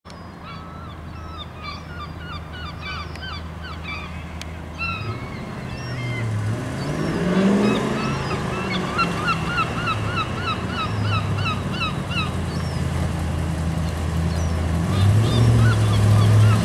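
Engine of a classic Triumph TR7 sports car running as it approaches, rising in pitch as it accelerates about five to eight seconds in, then holding steady and getting louder as it comes close near the end. Birds chirp over it in quick runs of short repeated notes.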